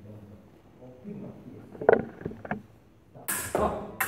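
Sabre fencing drill: two sharp knocks about half a second apart, the loudest sounds here, then a sudden burst of hiss near the end, over faint voices in the hall.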